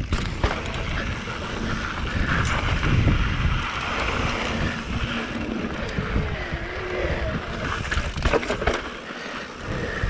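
Electric mountain bike rolling down a dirt singletrack trail: tyre rumble and frame rattle over the rough ground, with wind buffeting the action camera's microphone. A few sharp knocks come about eight seconds in.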